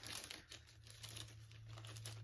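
Faint crinkling and rustling of packaging as an item is unwrapped by hand, a little stronger in the first half second.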